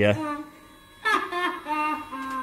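A drawn-out vocal sound at a steady pitch, starting about a second in after a brief lull.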